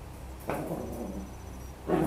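Toy poodle vocalising briefly twice, once about half a second in and again near the end.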